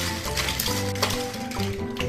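Small plastic interlocking toy blocks clattering and rattling as hands rummage through a loose pile, picking pieces out, over background music with stepped notes and a bass line.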